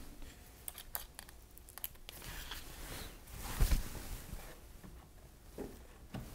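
Faint handling noises: scattered light clicks and rustles as a cordless drill and screw are set against wooden framing, with a soft knock about three and a half seconds in.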